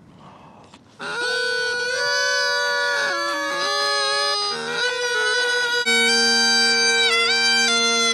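Two bagpipe practice chanters played at once, starting about a second in, with unsteady notes that clash and waver. A few seconds later it gives way to a set of bagpipes: a chanter tune over steady, low drones.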